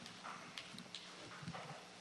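Faint, scattered knocks and shuffles of people moving about a meeting room, irregular and with no steady rhythm.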